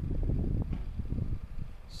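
Low, irregular rumbling with small knocks, the sound of a handheld camera being moved about, with wind on its microphone.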